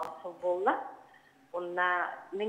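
Speech only: a person speaking in short phrases, with one rising inflection and a brief pause.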